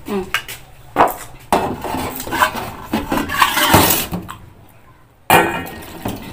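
A spoon clinking and scraping against a bowl, with close-up eating sounds, as a bowl of noodle soup is eaten: sharp clinks early on, a dense busy stretch in the middle, and a loud clatter about five seconds in.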